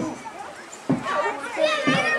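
Children talking and calling out close by, with a dip early on and the voices louder from about a second in.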